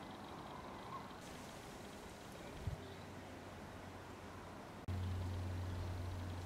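Faint background noise, then a click a little over two and a half seconds in, followed by a steady low hum that gets louder just before the end.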